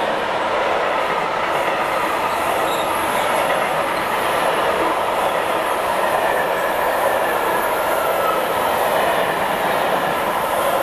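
Freight train of covered box wagons rolling past close by: a steady, loud rumble of wheels on rail with faint thin squealing tones above it.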